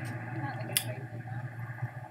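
A man's voice held in one long, steady, drawn-out 'mmm/uhh' filled pause, with a single mouse click about a second in.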